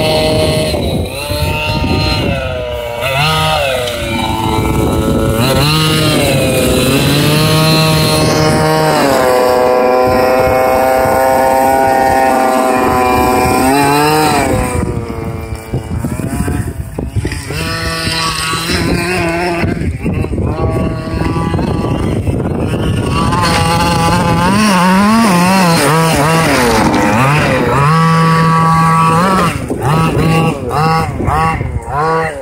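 Two-stroke gas engine of a Losi DBXL 1/5-scale RC buggy running under throttle, its pitch rising and falling as it drives over loose gravel. It holds steady revs for several seconds in the middle and revs up and down quickly near the end.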